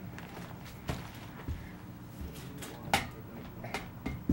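A few light knocks and clicks from a plastic hula hoop being picked up and handled, the sharpest one about three seconds in.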